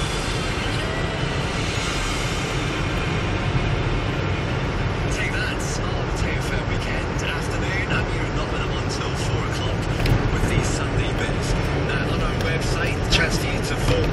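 Car radio playing inside a moving car: a song ends in the first few seconds and a radio presenter starts talking, over the car's steady low road and engine rumble.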